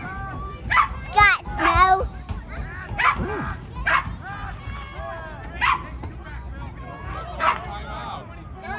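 Short, high-pitched yelps repeated every second or two over background voices.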